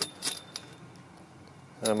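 Galvanized steel fence top rail clinking against the chain-link post sleeve it sits in: three light metallic clinks in the first half-second from a loose, not-quite-tight joint.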